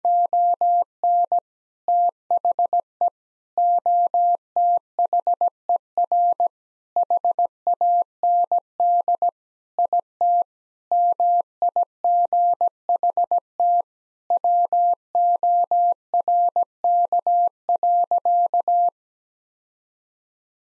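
Morse code sent as a single steady tone of about 700 Hz, keyed in dots and dashes at 17 words per minute. It spells out the sentence "On the other hand it might work" and stops about a second before the end.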